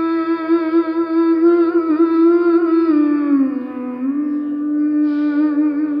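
A woman humming the slow melodic opening of a Kannada bhavageete with closed lips. She holds one long note, slides down to a lower note about three seconds in, then steps back up and holds it until near the end.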